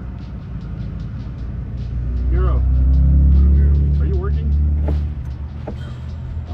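Low vehicle rumble, phone-recorded, that swells to its loudest in the middle and then eases off, with muffled voices and a music bed underneath.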